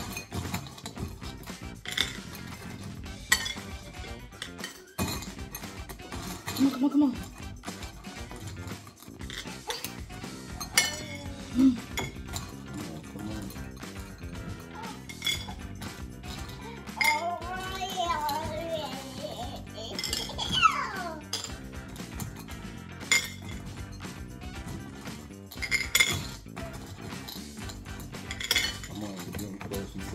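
Light clinks and taps of fingers and Mike and Ike candies against a small glass bowl as the candies are picked out one at a time, the clicks coming irregularly throughout.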